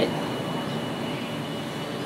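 A steady hiss of background noise, even and unchanging, with a faint thin high tone running through it.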